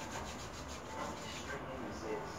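Cloth rubbing and rustling in a run of quick, soft strokes, as of fabric being handled or rubbed against hair and skin.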